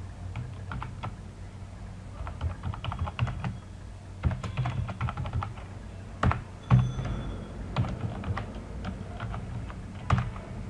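Typing on a computer keyboard: irregular runs of keystrokes with short pauses, one stroke noticeably louder about two-thirds of the way in.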